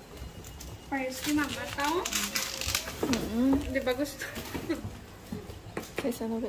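People talking in a small room while items are handled inside a cardboard box: rustling of packaging, and a sharp knock near the end.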